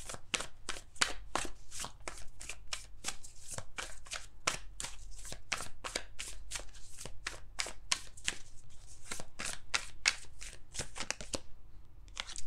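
A deck of tarot cards being shuffled by hand: a steady run of quick, papery slaps, about four a second, that stops shortly before the end.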